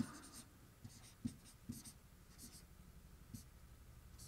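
Faint, short strokes of a dry-erase marker writing letters on a whiteboard, several quick scratches in the first two and a half seconds, then stopping.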